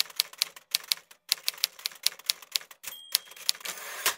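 Manual typewriter keys clacking at several strokes a second, with a short pause about a second in, then a brief high bell ding about three seconds in, like a typewriter's margin bell.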